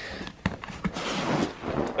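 A vinyl-covered MiraFit fitness sandbag being gripped by its handles and lifted: a rustling shuffle of handling noise with a couple of light knocks.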